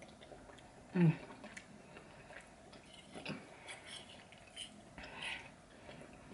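A woman chewing a forkful of stewed lamb and rice, with soft mouth clicks and smacks, and an appreciative "mm" hum about a second in.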